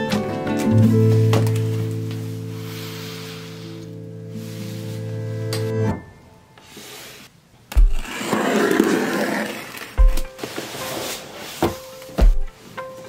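Background music holds a sustained chord and stops about six seconds in. Then a cardboard shipping box is handled and opened: a few low thuds as it is set down and knocked, and a scraping rustle of cardboard.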